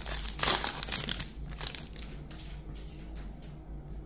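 Foil trading-card pack wrapper crinkling as it is handled and the cards are slid out, loudest in the first second or so, then fading to softer rustling.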